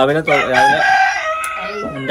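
A rooster crowing once, one long call of about a second and a half that drops in pitch partway through.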